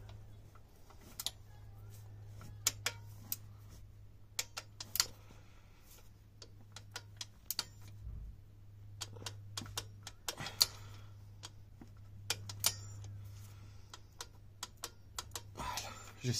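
Torque wrench ratchet clicking in irregular short runs as the oil drain plug is tightened toward 30 N·m, over a steady low hum.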